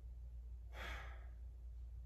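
One deep breath from a woman holding a yoga stretch, heard faintly about a second in as a soft, breathy rush of air.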